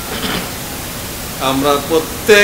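Steady background hiss under a pause in a man's chanted Bengali supplication prayer (munajat), with a brief breath near the start; about a second and a half in, his voice resumes in a drawn-out, sung delivery.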